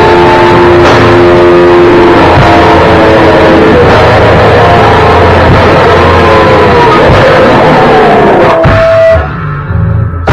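Rock band playing loud in a small room: electric guitars, bass guitar and drum kit, with held and bending guitar notes. The band stops abruptly about nine seconds in.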